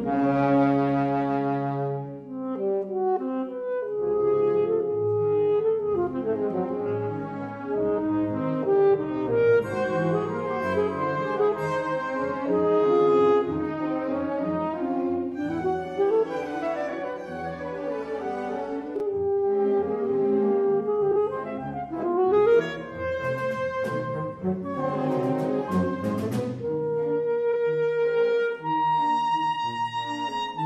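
Alto saxophone playing a solo line over a chamber string orchestra in a live classical concert performance. A loud sustained orchestral chord ends about two seconds in, then the saxophone plays phrases of held and moving notes over the strings.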